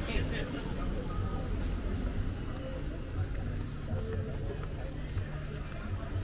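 Evening street ambience while walking: indistinct voices of passers-by over a steady low rumble, with regular soft thuds of the walker's footsteps.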